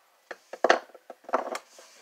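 Hard objects knocking on a desktop as a small hand-carved wooden knife is set down and other items are handled. A sharp knock comes a little under a second in, then a short clatter a little past halfway.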